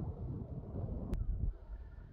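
Wind rumbling on the microphone, with a sharp click just over a second in, after which it is quieter.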